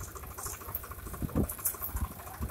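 Leafy weeds rustling as they are pulled up by hand and carried, with a few soft low thumps about halfway through over a steady low hum.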